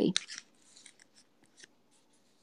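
Faint, short scratchy sounds of a pointed dip pen working on paper, coming in scattered strokes after a brief rustle near the start.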